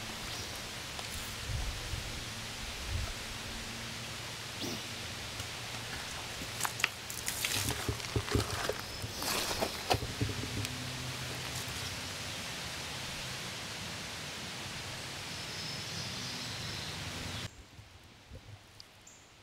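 Steady outdoor hiss of creekside ambience, with a cluster of clicks, knocks and splashes from about seven to ten seconds in as a Grayl filter bottle is handled, dipped and filled in the creek. The hiss drops away suddenly near the end.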